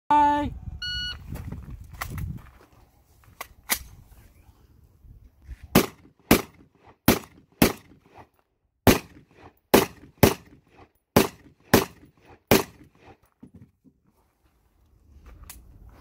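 A shot timer's electronic start beep, then a string of about a dozen gunshots fired in quick pairs about half a second apart over some twelve seconds as the shooter engages steel targets.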